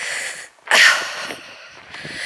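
A person's breathing close to the microphone while walking: two breaths, the second, starting sharply about two-thirds of a second in, the louder.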